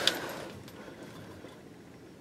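Faint background noise with no distinct sound; no engine cranking or running is heard.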